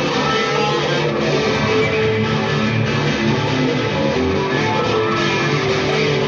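Stratocaster-style electric guitar playing continuously through an amplifier.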